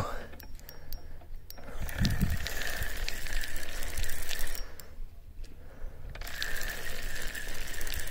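Spinning reel being cranked to wind in line: a steady whir with fine ticks from the gearing, which stops for about a second and a half near the middle and then resumes. The line comes in heavy, which the angler takes for leaves and weeds caught on the rig rather than a fish.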